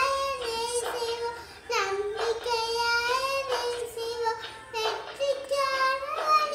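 A young girl singing a song in Tamil without accompaniment, holding long sung notes in phrases with brief breaths between them.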